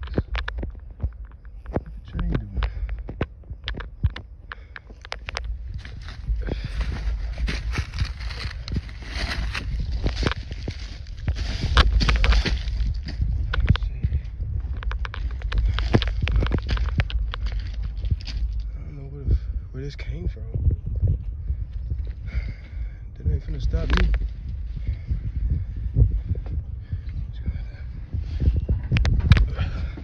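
Footsteps crunching on railroad ballast beside a stopped freight train, with a steady low rumble of wind and handling noise on a handheld phone's microphone.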